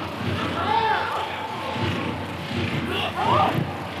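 Pitch sound of a live professional football match: a steady noise from the ground with a few faint shouts from the field, once about a second in and again near the end.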